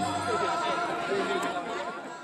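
People's voices and chatter, with a few lingering ringing tones, fading out near the end.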